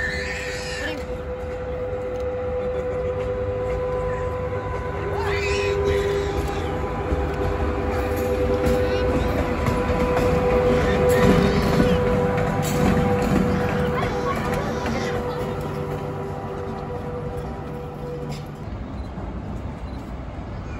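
SS8 electric locomotive running light past on station tracks, with a steady electric hum over a low rumble. It grows louder to a peak about halfway through and fades as it goes by, with a few clicks from the wheels near the middle.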